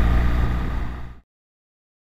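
BMW GS motorcycle being ridden: steady engine hum with road and wind noise. It fades and then cuts off abruptly a little over a second in, leaving silence.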